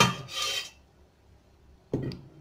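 A metal spoon clinks against a serving dish, then gives a short scraping rasp about half a second in. A second clink comes near the end.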